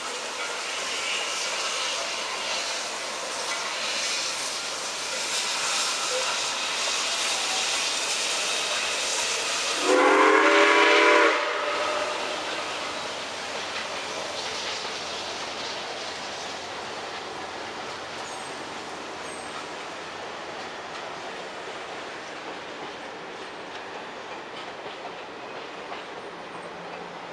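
Passing steam excursion train with a diesel in its consist: steady rumble and clatter of locomotives and rail cars, loudest in the first dozen seconds and easing as the passenger cars roll by. About ten seconds in comes a single multi-note chime blast of about a second and a half, the loudest sound.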